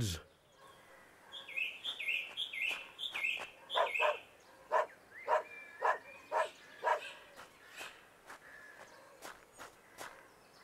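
Garden birdsong: a run of five quick, falling high chirps, then a series of short, lower calls about twice a second that fade toward the end.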